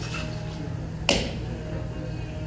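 A single sharp knock with a short ring about a second in, as a metal cocktail shaker tin is set down on the bar, over a steady low hum.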